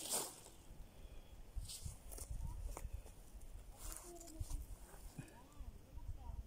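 Wind buffeting the microphone in low gusts, with several sharp clicks and rustles from gear being handled close by and faint distant voices.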